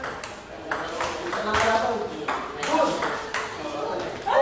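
Table tennis ball in a rally, sharp clicks off the paddles and table coming roughly every half second.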